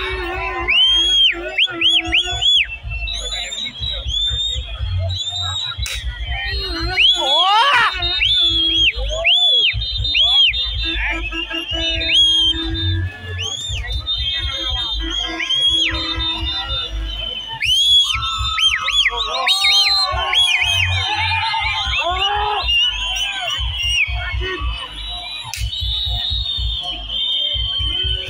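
Live Bantengan accompaniment music: a shrill piping melody of quick rising-and-falling notes over heavy drum beats, with crowd voices and shouts mixed in.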